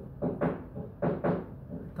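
Construction work in a neighbouring flat: a series of knocks or bangs, a little over two a second.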